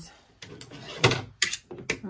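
Tabletop handling sounds: a sharp knock about a second in, with a few lighter clicks and a faint fabric rustle around it, as a small sewing tool is picked up and the cotton bag is handled.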